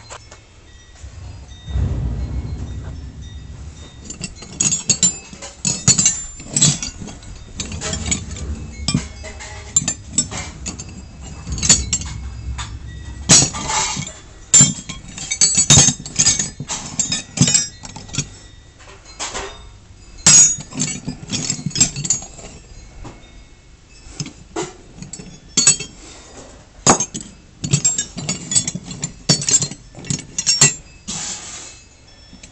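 Rusty steel open-end wrenches clinking and clanking against each other as a hand sorts through a pile of them, in irregular sharp metal knocks. A low rumble runs under the first half.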